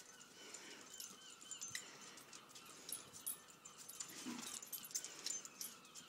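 A dog whining faintly: a quick run of short, high-pitched whimpers in the first second and a half, trailing off into fainter ones, with a brief lower sound about four seconds in.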